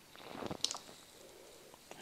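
Apple 30-pin dock connector being pushed into an iPhone 4S: a brief scrape that ends in a few light clicks a little over half a second in as the plug seats.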